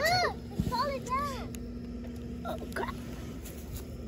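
A child's voice in short, high exclamations that rise and fall in pitch, then a brief 'oh', over a steady low hum.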